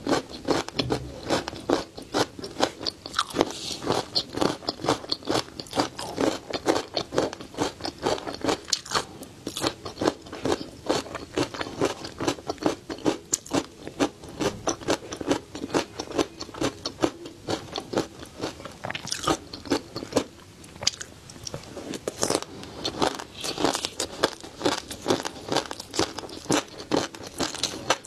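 Close-miked chewing of crispy flying fish roe (tobiko), a fast stream of crisp crunching clicks, several a second, with no pause.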